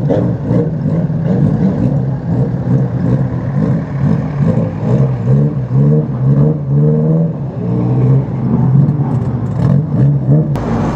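Banger racing car engine revving up and down repeatedly as the car creeps forward, with short clatters mixed in.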